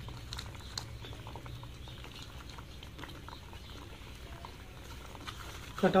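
Thick semolina halwa mixture bubbling and popping softly in a steel pot over the heat, with many small irregular crackles over a steady low hum.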